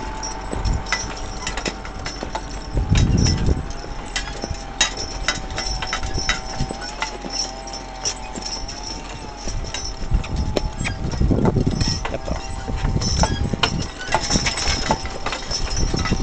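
A team of Belgian draft horses walking in harness through snow: the chain and ring fittings of the harness clink and jingle with their steps, over hoof falls in the snow. A steady faint whine runs underneath, with a few low thumps about three seconds in and again past the middle.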